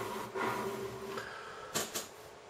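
Faint handling noise of a motherboard being shifted by hand on a wooden desk, with a brief rub a little before the end.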